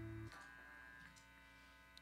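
Near silence: a faint steady electrical hum from the band's amplifiers. A held low note cuts off about a quarter second in.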